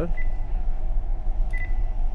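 Two short, high key beeps from a Furuno FM-8800S VHF radio as its channel knob is worked to set channel 14, one just after the start and a slightly longer one about one and a half seconds in, over a steady low hum.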